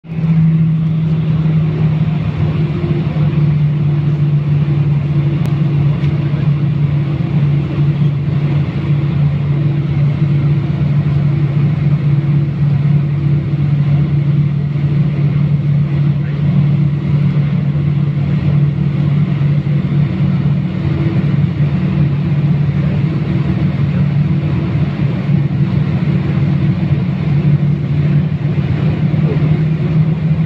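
Jet airliner cabin noise while taxiing: a steady loud drone with a low hum from the engines and air system, holding one pitch throughout with no spool-up.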